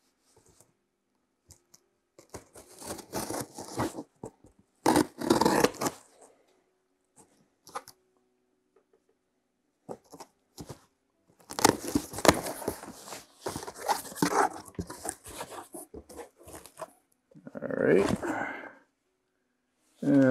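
A knife slitting the packing tape on a cardboard shipping box in several short ripping strokes. Then comes a longer stretch of tape and cardboard tearing as the flaps are pulled open.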